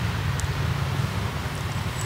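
Steady low background hum, with a faint tick about half a second in.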